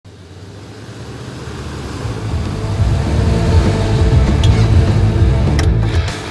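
A motor vehicle's engine growing steadily louder over the first few seconds as it approaches, then holding loud before dropping away sharply just before the end, with a couple of sharp clicks.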